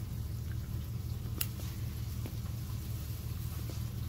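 A steady low hum, with one sharp click about a second and a half in and a few faint ticks.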